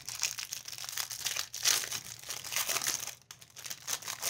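Clear plastic wrapping crinkling and crackling as it is peeled and pulled off a small stack of trading cards, irregular and continuous with a brief pause near the end.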